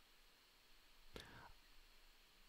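Near silence, broken about a second in by a faint click and a short breath close to the microphone.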